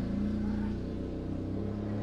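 A steady low background hum, even in level, with a faint drone line that fades out about halfway through.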